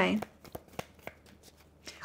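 A deck of tarot cards being shuffled by hand: a string of light, irregular clicks as the cards tap and slide together.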